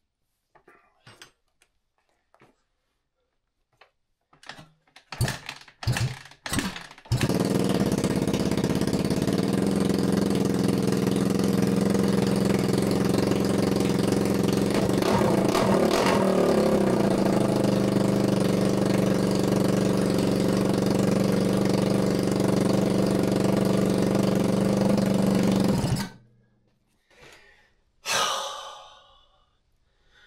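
2014 Kawasaki KX250F's fuel-injected four-stroke single giving a few short bursts, then catching about seven seconds in and running steadily under its own power, its exhaust open for lack of a mid pipe. It cuts off suddenly a few seconds before the end.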